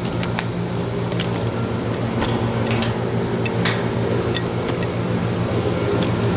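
Steady machine hum of an Oxford Plasmalab 800 Plus PECVD system running a pulsed-plasma deposition step, a low drone of several steady tones under an even hiss. Scattered light clicks run through it.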